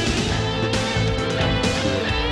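Rock-style TV theme music with guitar and a regular beat.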